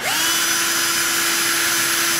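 Electric drill starting up, its whine rising quickly and then holding at a steady speed. It is spinning the shaft of a Rotax two-stroke snowmobile engine's oil injection pump to prime the pump and fill its oil lines.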